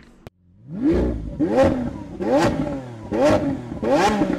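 A car engine revved in repeated blips, about five, each rising in pitch and dropping back. They start about half a second in, right after a short click.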